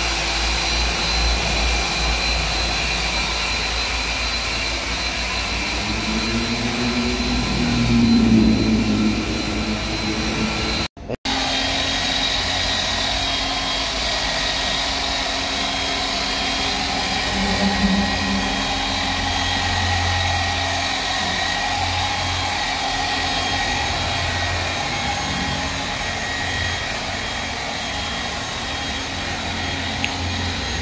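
Electric machine polisher running steadily as its foam pad buffs a car's painted door panel, a continuous motor whine whose pitch wavers as it is worked. The sound cuts out for a split second about eleven seconds in, then carries on.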